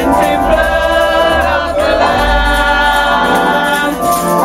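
Gospel singing: a woman's voice through the church PA with other voices joining in, on long held notes that slide from one to the next.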